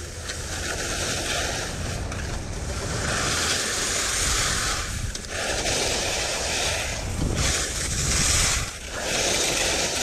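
Wind rushing over a helmet or chest camera's microphone as a skier descends a groomed run at speed, mixed with the hiss and scrape of ski edges on firm, icy snow. The noise surges and eases every second or two.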